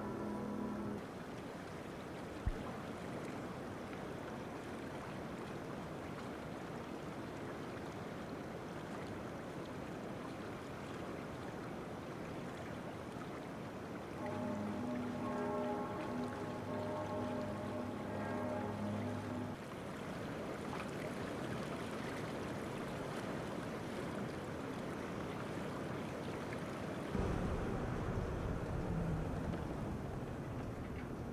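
Steady rushing of river water. Held musical tones sound in the opening second and again for about five seconds midway, and a deeper low rumble comes in near the end.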